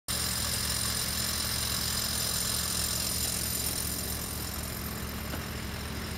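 Engine of a compact construction machine idling steadily, with a steady high whine over the low hum.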